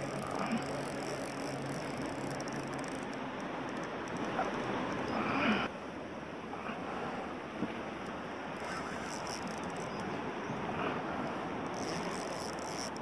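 Steady wind and water noise on open water. A low steady hum runs under it and stops about halfway through.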